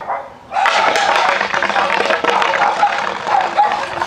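Skateboard wheels rolling over rough asphalt close to the ground: a continuous gritty rumble with fine ticks that starts abruptly about half a second in.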